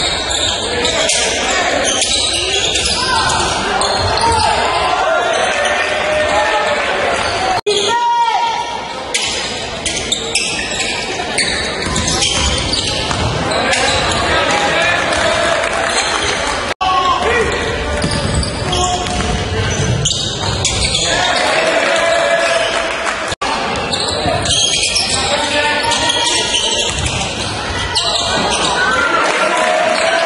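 Basketball game sound in a gymnasium: a ball dribbled on the hardwood court amid voices, echoing in the hall. Brief dropouts about 8, 17 and 23 seconds in break the sound where clips are spliced.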